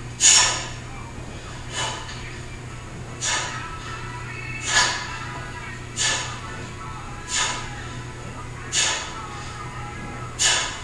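A woman breathing out hard in short puffs, one about every second and a half, in time with her dumbbell shoulder presses, with music in the background.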